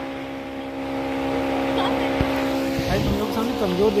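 A steady mechanical hum holding one low pitch throughout, with scattered voices of people around.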